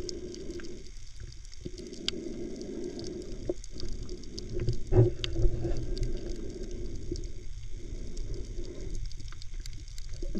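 Muffled underwater sound from a camera submerged in shallow sea water: a steady low rumble and hum with faint scattered crackling clicks, and one louder knock about five seconds in.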